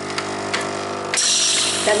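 Capsule coffee machine's pump running with a steady hum and a few clicks, then about a second in a loud hiss sets in as the coffee starts to flow into the mug.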